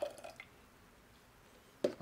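Milky cream-and-water rinse poured from a plastic bottle into a stainless steel saucepan: a brief splash and a few drips in the first half-second, then a single light knock near the end.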